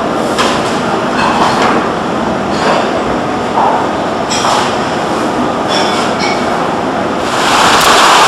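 Steady rumble and rattle of a vehicle driving on a rough mountain road, with short high squeaks. Near the end it gives way to the louder, even rush of a mountain stream tumbling over rocks.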